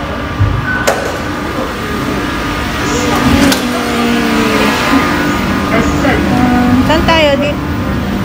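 Steady rumble of a metro train with people's voices over it, and a sharp click about a second in.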